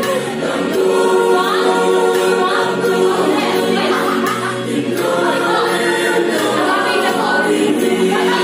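A mixed choir of men's and women's voices singing a Christian song in harmony, the chords held steady while melody lines move above them.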